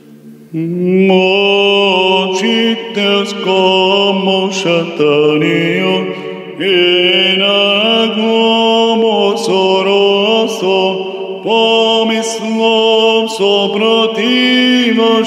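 A solo male cantor chanting an Orthodox Vespers sticheron in Church Slavonic in tone 4, in long held notes that step from pitch to pitch, starting about half a second in.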